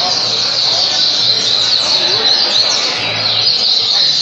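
Double-collared seedeater (coleiro) singing from its cage in fast, continuous chirping phrases, with other caged songbirds singing at the same time.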